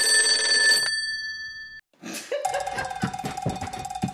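A mobile phone's electronic ring tone sounds once, holding for about a second and fading out by about two seconds in. After a short gap the song's intro starts: drum hits in an even beat under a steady held note.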